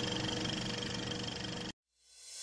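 Old film projector sound effect: a steady mechanical whirr with hum and hiss, rippling rapidly, that cuts off suddenly near the end.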